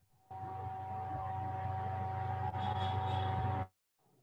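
Steady low electrical hum with a thin tone and hiss over it, from a participant's open microphone on an online call. It switches on abruptly just after the start and cuts off suddenly near the end.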